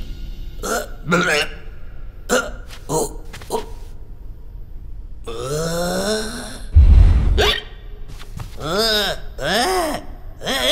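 A cartoon character's wordless voice: short grunts and gasps, then a drawn-out rising call, then wavering calls near the end. A loud, low boom comes about seven seconds in.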